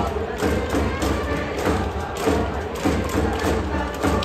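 Stadium cheering section's fight song: drums beating about twice a second under brass and fans chanting along, with crowd noise throughout.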